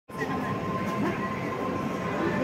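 Background murmur of distant voices with one steady high-pitched hum held throughout.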